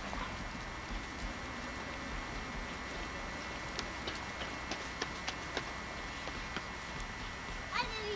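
A horse walking on dry grass, its hooves giving a few soft, irregular knocks over a steady hiss. A short voice sounds near the end.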